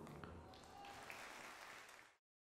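Faint audience applause from a theatre hall, tailing off.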